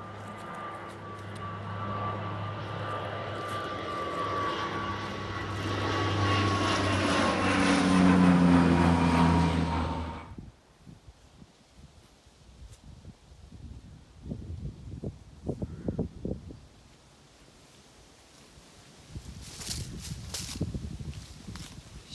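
A low-flying geological survey plane passing overhead, its engine growing louder for about ten seconds and its pitch sinking slightly as it comes over, then cut off abruptly. After that, only faint scattered knocks and rustles.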